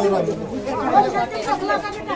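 Several people talking at once: a crowd's overlapping chatter, with no single voice clear.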